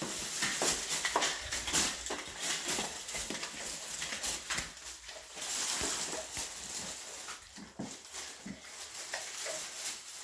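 Thin plastic carrier bag rustling and crinkling as it is carried and rummaged through by hand, in a run of short irregular crackles.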